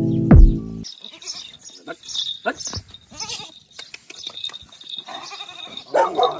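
Music with a heavy beat stops about a second in. A goat kid then bleats with a wavering call near the end.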